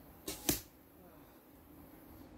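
An arrow from a traditional bow arriving and sticking in the leaf-covered ground: two quick sharp hits about a quarter second apart, the second louder.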